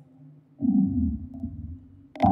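A granular-processed tom loop played through Ableton's Corpus resonator in membrane mode and a phaser, sounding as a low, rumbling resonant tone that comes in about half a second in and fades towards the end, while the phaser's centre frequency is turned down.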